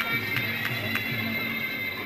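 Muay Thai ringside sarama music: a reed pipe's held high notes over a regular drum beat, with a few sharp hits about half a second to a second in.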